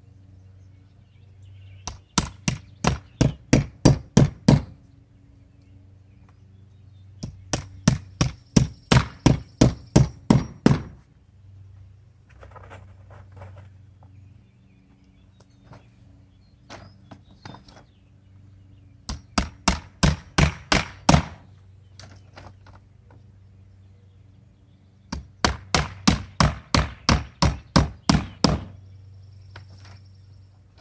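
A claw hammer driving nails into cedar bevel siding boards, in four runs of about ten quick strikes each at about four a second. Each run grows louder as the nail goes home. A few light taps fall between the runs, over a low steady hum.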